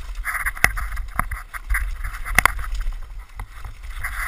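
Downhill mountain bike descending a rocky dirt trail at speed: continuous wind buffeting on the microphone with tyres rattling over dirt and rock, and sharp clatters as the bike hits rocks, the loudest about two and a half seconds in.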